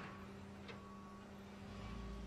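A faint, steady low-pitched hum with a thin higher tone over it, and a deeper rumble coming in near the end.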